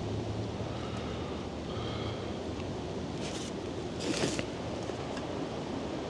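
Wind buffeting the microphone outdoors, a steady low rumble, with two brief rustles about three and four seconds in as parts are handled out of the box.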